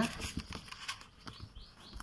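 Sheets of A5 copy paper rustling and tapping against a desk as a stack is gathered and straightened by hand, with several sharp taps. A few short, high chirps come near the end.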